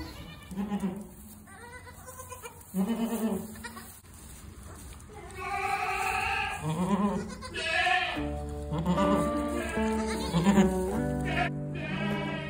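Newborn Saanen goat kids bleating in a string of short calls, with background music coming in about eight seconds in.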